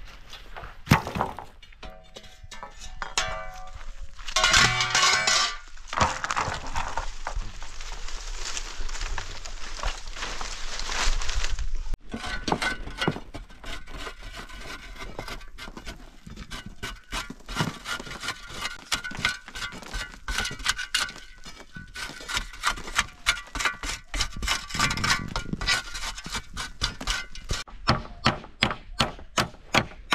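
Repeated thuds of a shovel digging into a dry earth bank, set under background music. Near the end the strikes settle into a steady run of about two a second.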